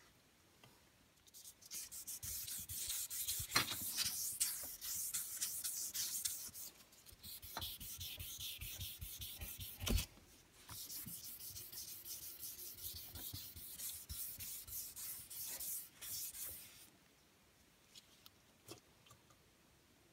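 Fine 3000-grit wet-and-dry sandpaper rubbed rapidly back and forth by hand over the wet lacquered finish of a guitar body, a scratchy stroking hiss that starts about a second in. This is the fine wet-sanding stage of removing scratches before polishing. There is a single knock about halfway through, and the sanding stops a few seconds before the end.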